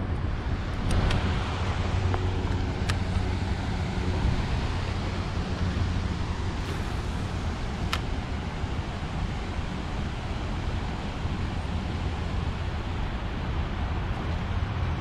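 Wind buffeting the microphone as a steady low rumble, with a few faint sharp clicks about one, three and eight seconds in.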